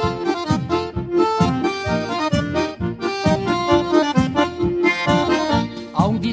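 Instrumental passage of gaúcho music led by an accordion, with bass and a steady beat underneath.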